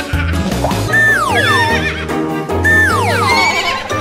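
A horse whinnying twice, each call a falling cry, about a second in and again near three seconds. Background music with a steady beat plays underneath.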